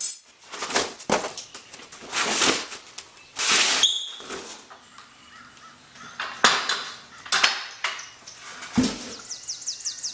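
Cardboard scraping and rustling, with knocks and clanks of steel, as a Craftsman motorcycle lift is pulled out of its shipping box and set down on a concrete floor. Near the end a bird outside calls with a quick run of high, falling chirps.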